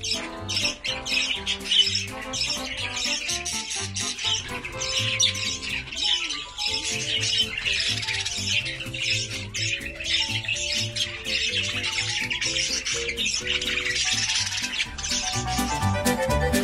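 Background music playing over the chattering of pet budgerigars.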